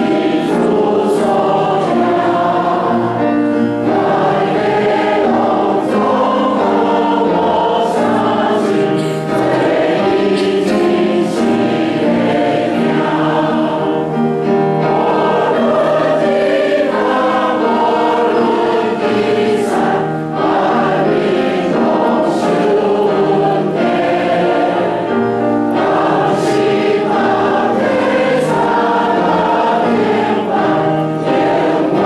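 Church congregation singing a hymn in Taiwanese Hokkien, many voices together, steady and unbroken.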